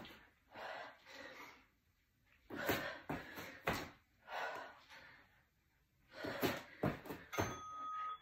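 A person doing burpees on an exercise mat: heavy breathing in repeated hard breaths, with thuds as the feet and hands land. A short steady beep sounds near the end.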